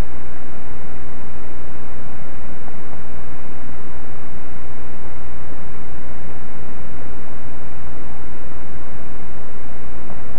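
Loud, steady hiss with a low hum underneath from a security camera's microphone picking up a still, empty room; no knocks or falls stand out.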